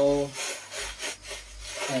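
Metal triangular plastering screed scraping across fresh cement render on a wall, a series of rasping strokes as it levels the surface and shaves off the excess mortar.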